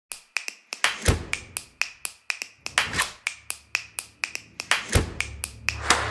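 Title-sting sound design of sharp rhythmic clicks, about four a second, with deep bass hits about a second in, around three seconds and near five seconds. A low drone comes in under it about halfway, and the last click rings on.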